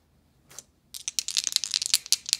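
A pair of dice being picked up and shaken in the hand for a tabletop baseball game's roll: a quick, irregular run of clicks that starts about a second in.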